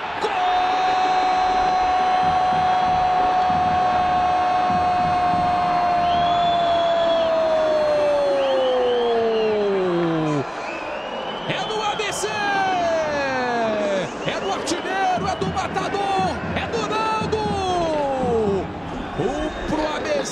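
A Brazilian TV football commentator's drawn-out goal cry, one long shout held at a single pitch for about ten seconds before it falls away. It is followed by a string of shorter shouted calls that drop in pitch. The cry marks a headed goal.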